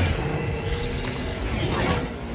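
Film sound effect of a continuous crackling energy beam blasting, a dense rushing sound at a steady level.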